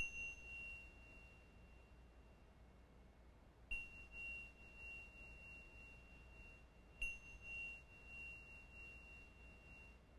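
A pair of tingsha cymbals struck together three times, about three and a half seconds apart. Each strike gives one high, clear ringing tone that wavers as it fades, marking the close of a silent meditation.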